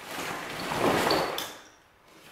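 A long string of Enphase connector cable being pulled up out of a cardboard box: a sliding, rustling scrape of cable against cardboard that swells and then dies away about a second and a half in.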